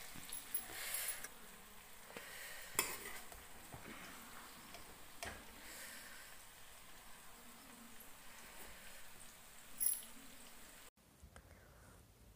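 Metal spoon scraping and tapping against a steel kadhai while cooked jackfruit is scooped out, a few faint scrapes and sharp clicks of metal on metal.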